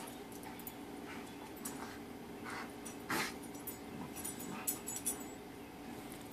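Two pit bull terriers play-wrestling, making short, soft snuffling and mouthing noises, the loudest about three seconds in.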